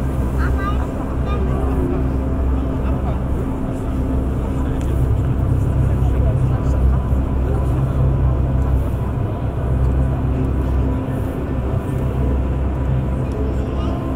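A deep, steady rumble of hall ambience in the huge echoing gas-holder, with indistinct voices of visitors murmuring beneath it.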